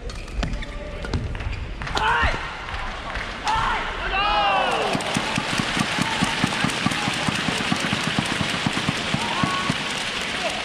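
A few sharp racket hits on the shuttlecock as a badminton rally ends, then an arena crowd shouting and cheering. The crowd breaks into loud applause with rhythmic clapping of about four beats a second.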